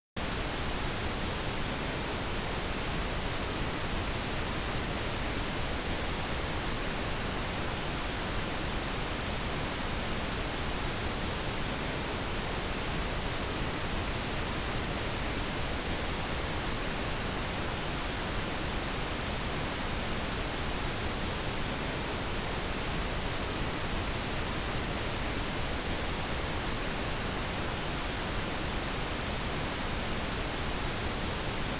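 Recorded pink noise played back, captured through Midas Pro and Behringer XR18 'Midas Designed' mic preamps: a steady, even hiss that cuts in abruptly from silence at the start.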